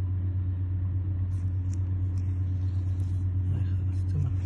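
A steady low hum that holds unchanged throughout, with a few faint light ticks in the middle.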